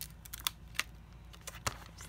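A few light clicks and taps of plastic being handled: clear acrylic stamps and their plastic storage case being picked up and moved on the desk. Three of the clicks stand out, spread over two seconds.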